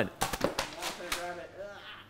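A few quick scuffs and knocks of people moving across the floor, then quiet, indistinct voices.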